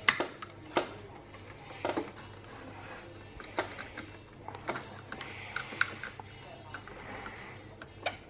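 Light clicks and taps of a fan's circuit board, metal-shielded filter box and wires being handled and pushed into the fan's plastic housing, coming singly about once a second, over a faint low hum.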